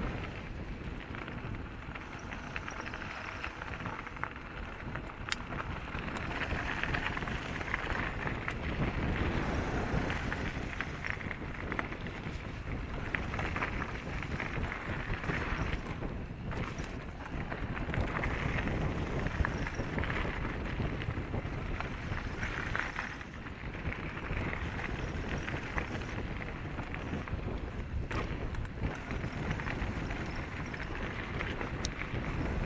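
Downhill mountain bike running fast over a rough dirt trail, heard from a camera on the rider: steady tyre and wind noise with constant rattling and knocking from the bike over bumps.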